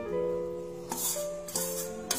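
Background music of held keyboard-like notes, with a couple of short clinks from a wire whisk against a steel mixing bowl about a second in and again a moment later.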